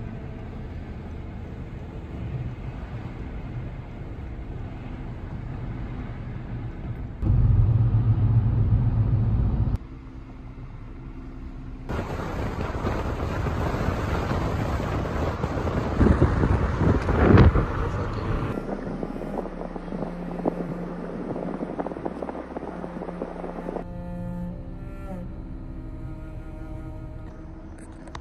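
Road noise from inside a moving car, in a run of short clips that change abruptly every few seconds. The loudest stretch, a rushing noise with a few sharp knocks, comes around the middle.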